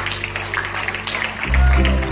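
Live church worship band music: a held keyboard chord fades, then about a second and a half in the band comes in louder with strong low notes and new chords.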